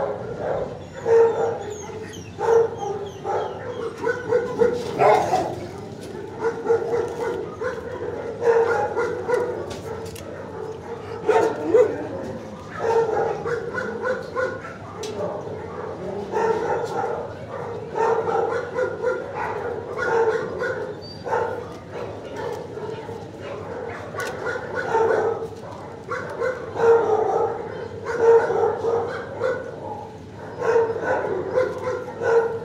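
Dogs in a shelter kennel barking over and over, the barks coming in quick, irregular bouts and overlapping.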